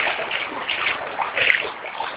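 Water splashing as a dog swims, in irregular splashes, the loudest about one and a half seconds in.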